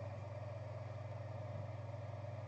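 Steady low background hum, even throughout, with nothing else sounding.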